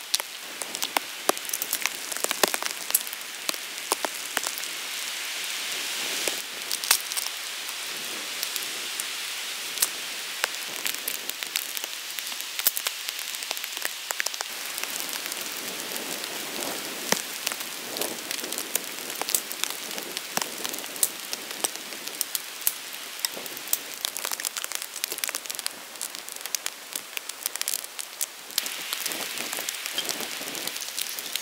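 Steady rain falling, a constant hiss with many sharp drop ticks pattering through it.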